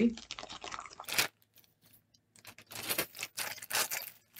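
Handling noise from items being moved and a box rummaged through: one sharp click about a second in, then a run of irregular rustling, crinkling clicks from about two and a half seconds on.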